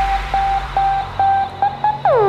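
Stripped-back breakdown in a dubstep track: a synth note repeated at one pitch with short pitch blips, the bass and drums dropped out and the highs gradually filtered away.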